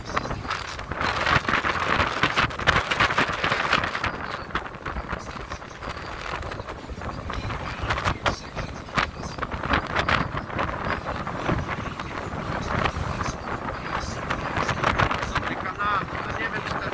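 Wind gusting over the microphone on a moving boat, over the churn and splash of choppy water in its wake and the low run of the boat's engine.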